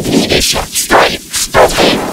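Shouted cartoon dialogue run through heavy distortion effects, coming out as a string of loud, crunchy bursts with no words clear enough to make out.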